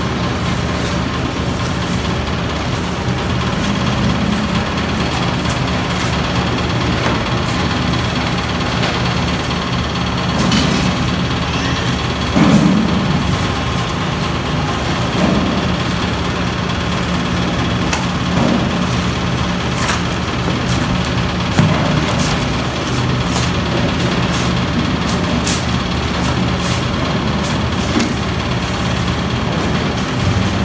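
A steady motor drone with a low hum runs throughout, and short slaps and scrapes come through it now and then as a trowel throws cement mortar onto a wall.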